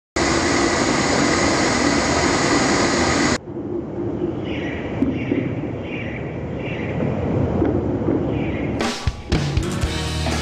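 A gas burner flame roaring steadily, cutting off abruptly about three seconds in, followed by a quieter stretch; guitar-led music starts near the end.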